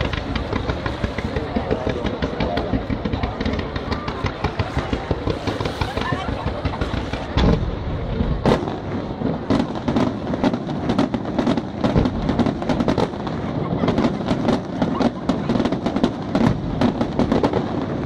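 Fireworks display: a continuous run of aerial shell bursts and crackling reports. The loudest reports come about seven and a half and eight and a half seconds in, followed by a denser, faster run of sharp bangs.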